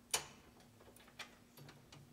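A few faint, sharp clicks in a quiet room: one louder click just after the start with a brief ring after it, another about a second later, and softer taps near the end.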